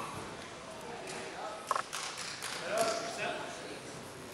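Indistinct voices of people talking in a gymnasium, with a few short knocks.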